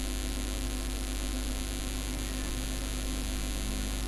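Steady electrical mains hum with a constant background hiss, unchanging throughout, the noise floor of a low-quality recording setup.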